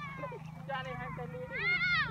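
Young children calling out in high voices, ending in one long shout that rises and falls in pitch near the end.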